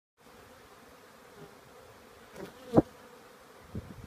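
Honey bees buzzing in flight around a yard of hives: a steady hum, with a few brief, louder buzzes as bees pass close. The loudest comes about three quarters of the way through.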